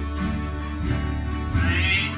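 Acoustic guitar playing a slow country gospel tune, with steady low bass notes under the chords and a higher, wavering melody line coming in loudly near the end.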